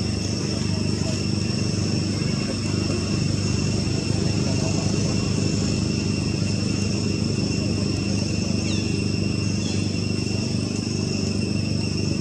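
Insects droning steadily at a high pitch over a continuous low hum, with a couple of short falling chirps in the second half.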